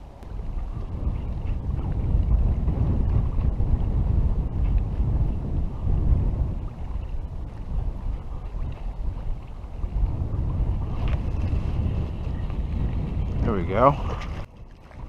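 Strong, gusty wind buffeting the camera microphone: a low rumble that swells about two seconds in and keeps rising and falling with the gusts.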